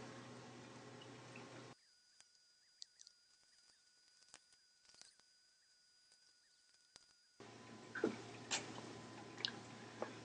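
Near silence: faint room hiss and hum, which drops out entirely for several seconds in the middle. A few faint clicks come near the end.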